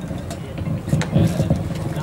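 A man's voice over a microphone and loudspeaker, boomy and indistinct.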